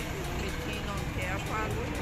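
Steady city street traffic noise, a low even rumble, with faint voices in the background.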